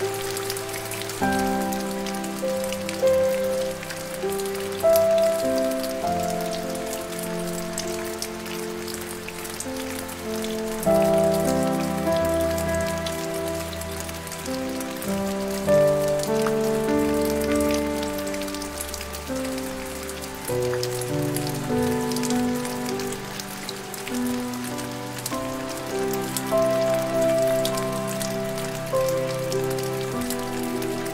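Steady, dense rain patter mixed with soft, slow piano music. Long-held chords change every few seconds, with a change about a second in and others near 11, 16 and 21 seconds.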